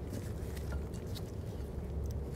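Faint light clicks and handling noise from a new brake caliper being seated onto the steering knuckle, over a steady low hum.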